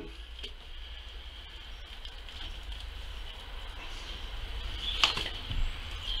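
Faint handling sounds of a hare's skin being pulled off the carcass by hand, with scattered soft ticks and one sharper click about five seconds in, over a steady low hum.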